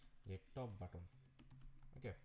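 Computer keyboard typing a short run of keystrokes, with a man's voice murmuring over part of it.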